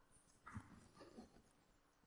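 Near silence, with a few faint soft taps of a stylus writing on a tablet.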